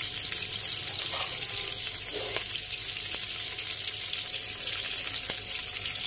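Onion and bell pepper pieces sizzling in hot oil in a frying pan: a steady hiss with small crackles throughout.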